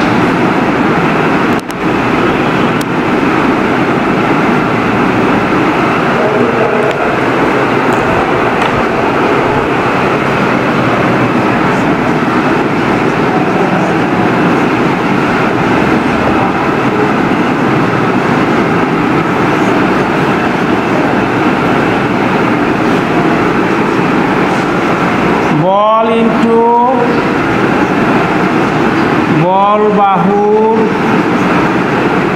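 A loud, steady background din with no clear source. Near the end come two short groups of rising pitched calls.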